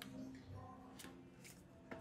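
Faint room background with a few light ticks, about one a second, from playing cards being drawn and slid on a felt blackjack table.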